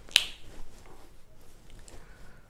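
A single sharp click just after the start, followed by quiet room tone with a few faint ticks.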